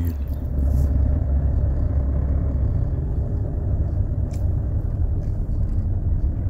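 Steady low rumble of a vehicle's engine and road noise heard from inside the cab while driving.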